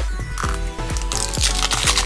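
Plastic shrink-wrap crinkling as it is peeled off a Mash'ems blind capsule. The crackle grows louder in the second half, over background music with a steady beat.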